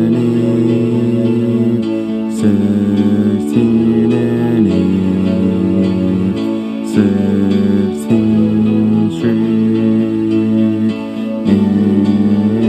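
Instrumental passage of a dreamy piano pop song, with no singing: slow held piano chords changing every second or two.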